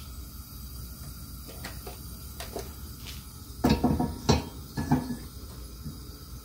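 Light knocks and clicks from a plastic jug of cooking oil being handled, set down and capped, over a faint steady background. There are a few faint clicks in the first half, then three louder knocks in the second half.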